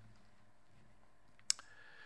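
A pause in a man's sermon: quiet room tone, broken by a single sharp click about one and a half seconds in.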